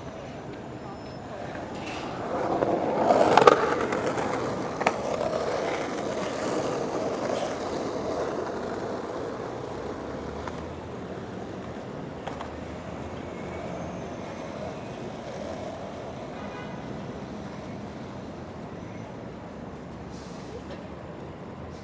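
City street traffic with passersby talking. A loud rolling vehicle noise swells about two to four seconds in, with a sharp click just after, then fades back to the steady traffic hum.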